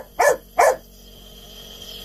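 A dog barking three times in quick succession, short sharp barks within the first second.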